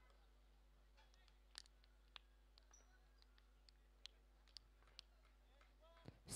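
Near silence with a few faint, sharp clicks scattered through it.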